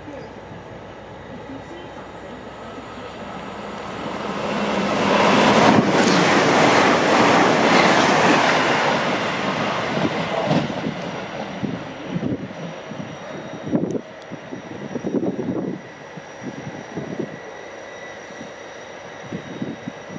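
Hull Trains Class 802 bi-mode express train passing at speed: a rush of wheel and air noise swells a few seconds in, peaks, then fades as the train draws away, followed by a few irregular bursts of noise.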